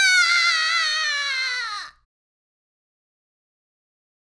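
A high-pitched, wavering cry or scream in one voice, sliding slowly down in pitch and stopping about two seconds in, followed by silence.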